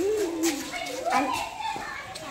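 Children's voices: a child talks or calls out at the start and again about a second in, with other children heard around.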